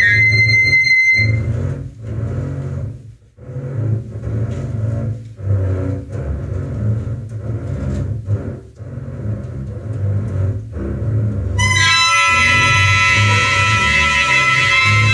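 Live jazz quartet: saxophone and clarinet hold high notes that stop about a second in, leaving the double bass playing low notes with short pauses, until the two reeds come back in loudly and sustained near the end.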